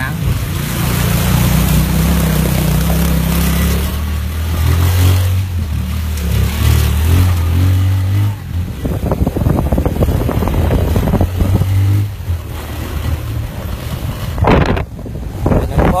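A small vehicle engine running under way, its low hum shifting in pitch, with rushing noise over it. There is a sharp knock about two seconds before the end.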